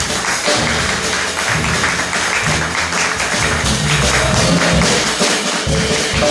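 Live jazz rhythm section playing without the saxophone: a drum kit with busy cymbal work over upright double bass notes.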